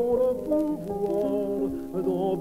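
A man singing a French art song to his own piano accompaniment on an old recording, sustained notes with a wavering vibrato over held piano chords.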